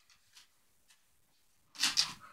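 Faint scuffs and clicks of beagles' paws and claws on a wooden floor as they play, then a short breathy burst near the end.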